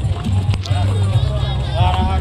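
Procession music from hand-carried gongs and drums: a steady low gong hum runs under people talking and calling.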